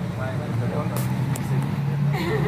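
A steady low hum with faint voices behind it, and two light clicks about a second in.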